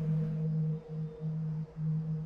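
Background music: a low sustained note held like a soft drone, dipping briefly a few times, with a fainter higher tone above it.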